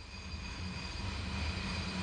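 Steady low background hum or rumble with no distinct event.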